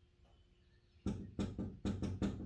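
Knocking on a door: a quick, uneven run of about five knocks that starts about a second in, each with a short ringing after it.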